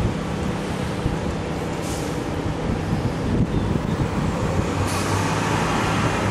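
Steady city road traffic: a continuous low rumble and hiss of passing vehicles, with brief swells of higher hiss about two seconds in and again near the end.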